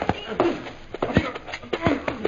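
Radio-drama fight sound effects on an old 1930s transcription recording: a quick series of thuds and blows mixed with short grunting voices, as a struggle is staged.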